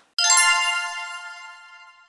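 A single bright chime struck once, about a fifth of a second in, then ringing out and fading away over about two seconds: a logo sound effect.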